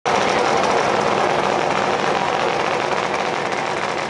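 A loud drag-racing engine running steadily.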